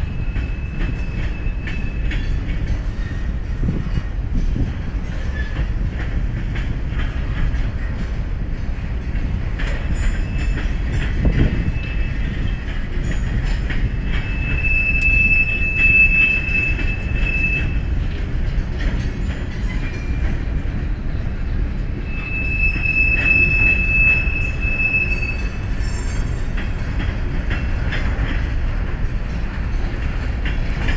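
CSX freight train's hopper cars rolling past with a steady low rumble of wheels on rail. The wheels squeal in a high, steady tone twice, about halfway through and again about three quarters of the way through.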